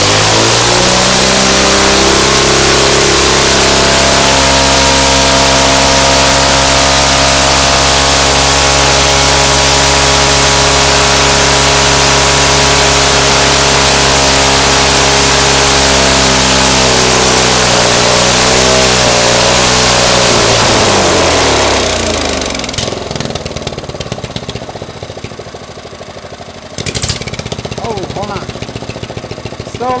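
Briggs & Stratton single-cylinder engine with a see-through head, running at full throttle on nitromethane with a loud, steady note. About 20 seconds in it drops in pitch and slows, then keeps running more quietly with separate firing beats, louder again near the end.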